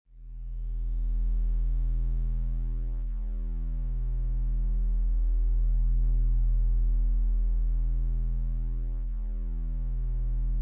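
Synthesizer music: a sustained low keyboard drone that fades in over the first second and holds steady, with a slow pulse about every two seconds.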